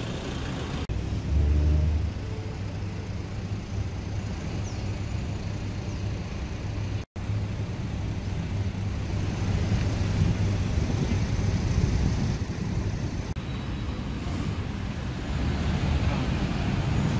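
Road traffic on a busy city street: cars and trucks running in slow traffic, a steady low rumble, with a louder engine hum about a second in and a brief cut-out about seven seconds in.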